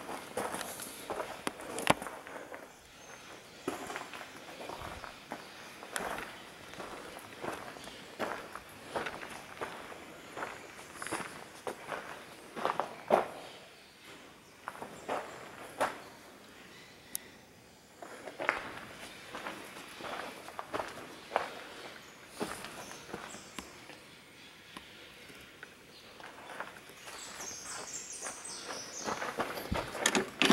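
Irregular footsteps on a dirt floor, with scattered light knocks and rustles.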